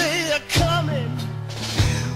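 Live soul-rock band music from a 1973 concert recording: steady bass notes and drum hits under a wavering, vibrato-laden lead melody.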